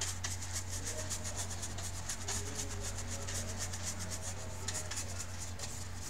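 A small paintbrush stroked quickly back and forth across a laptop's bottom case, giving a run of short bristle swishes a few times a second over a low steady hum.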